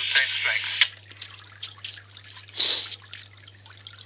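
Hiss-laden speech from a two-metre FM radio's speaker, stopping under a second in, then a short burst of static about two and a half seconds in, over a steady low hum.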